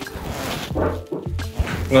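Background music, with a short voice-like sound partway through.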